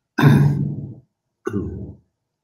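A man coughing twice: a longer cough, then a shorter one about a second later.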